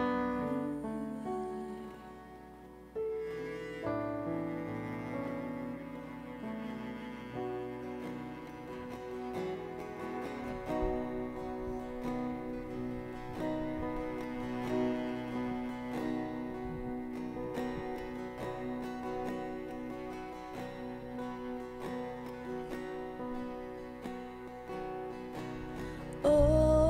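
A worship band's soft, slow instrumental interlude: long held notes on a bowed string instrument over keyboard and guitar, with no singing.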